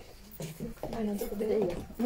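A woman's voice: a short word, then a drawn-out vocal sound about a second long whose pitch wavers up and down.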